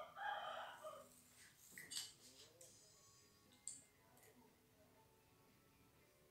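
Near silence, with a brief faint bird call in the first second and a few soft clicks from small items being handled.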